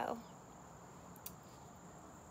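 Faint, steady, high-pitched insect trill, typical of crickets, running on without a break.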